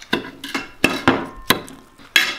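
Cutlery knocking and clinking against a plate, several sharp separate knocks, one leaving a brief ring.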